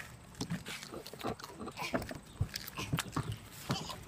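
Handling noise from a phone camera being grabbed and moved by hand: faint, irregular clicks, knocks and rubbing.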